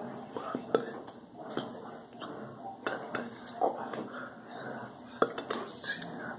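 Irregular sharp clicks and taps of hands striking and brushing against each other while signing, among soft breathy mouth sounds.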